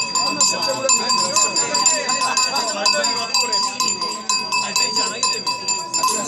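Bells shaken in a rapid, rhythmic jingle, with a steady metallic ringing, over the chatter of a crowd.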